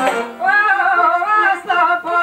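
Albanian folk song: a man starts singing about half a second in, holding long, ornamented wavering notes with a short break near the end, over plucked long-necked lutes (çifteli and sharki).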